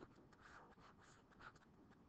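Near silence, with faint scratching strokes of a stylus writing on a tablet screen.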